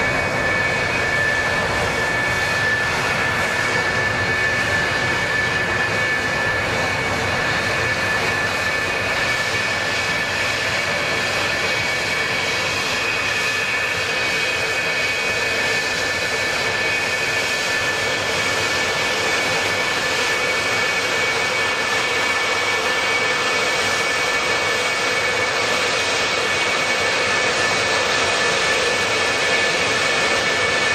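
F-4EJ Phantom jets' twin J79 turbojet engines running at idle on the apron: a steady jet roar carrying a constant high whine.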